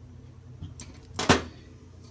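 A small metal folding knife set down on a hard counter: a few faint ticks, then one sharp knock a little past halfway.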